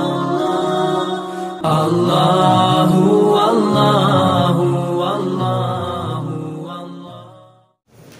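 Intro music of melodic chanted singing, in the style of a nasheed; it swells about a second and a half in and fades out near the end.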